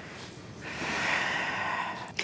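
A long, breathy exhale of a person's breath, starting about half a second in and lasting over a second.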